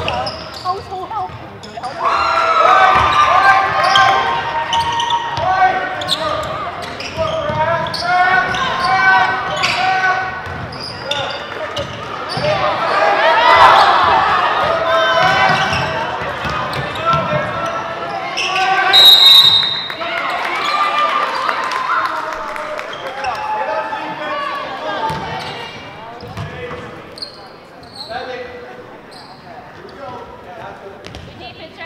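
Basketball dribbling and bouncing on a hardwood gym floor amid players' and spectators' shouting voices, echoing in a large hall. A short, high whistle blast, a referee's whistle, about 19 seconds in.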